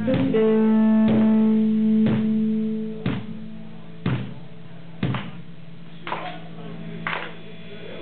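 Live band music: an electric guitar chord held and ringing, loud for about three seconds and then fading, with a sharp hit about once a second throughout.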